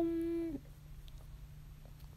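A drawn-out 'um' hesitation sound from a voice, held on one steady pitch and ending about half a second in, followed by quiet room tone with a low steady hum.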